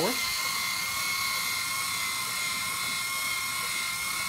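Two LEGO Mindstorms EV3 motors running steadily, set to nearly equal speeds (100 and 98), turning the gears that drive a pantograph drawing arm: a steady, even, high-pitched electric motor and gear whine.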